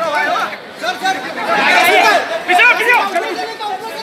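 Crowd chatter: many voices talking over one another at once, with no single clear speaker.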